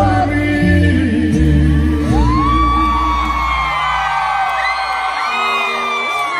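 Live band music with a steady bass line, and from about two seconds in many high-pitched screams and whoops from the concert crowd over it as the bass fades out.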